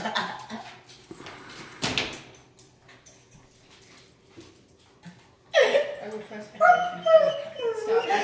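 German Shepherd whining, with a run of high-pitched cries in the second half. There is a sharp knock about two seconds in.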